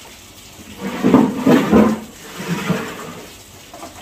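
Water sloshing in a large tub of washing-up water as plates are pushed down and moved around in it, loudest about a second in with a smaller slosh near the end. A tap runs steadily into the tub underneath.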